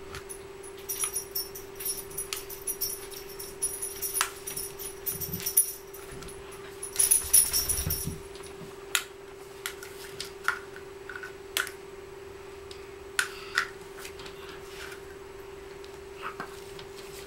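A baby handling small plastic toys: scattered clicks and taps, with a tinkling, jingling rattle in the first few seconds and again, louder, around seven seconds in.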